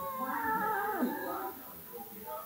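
Cat meowing in drawn-out calls that rise and fall in pitch, fading out about a second and a half in.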